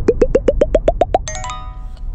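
Cartoon logo sound effect: a fast run of short springy blips, about seven a second, each a step higher in pitch, ending a little over a second in on a brief chord that fades away.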